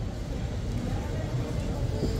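Outdoor street ambience: a steady low rumble with faint, distant voices.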